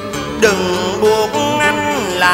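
Cải lương singing: a male voice sustaining and sliding between notes over traditional instrumental accompaniment.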